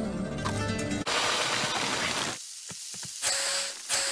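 Logo fanfare music with sustained tones that cuts off about a second in. A loud hissing, crackling noise follows, then fainter scattered clicks and ticks.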